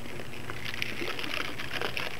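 A bottle of salt water, isopropyl alcohol and plastic beads being tipped and shaken. The liquid sloshes and the beads click against the bottle walls in a steady scatter as the layers are mixed.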